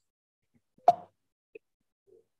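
One short, sharp click or pop about a second in, followed by a much fainter tick half a second later, with dead silence around them.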